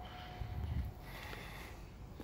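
Quiet outdoor ambience with a few soft, low thuds in the first second, typical of footsteps and camera handling while walking.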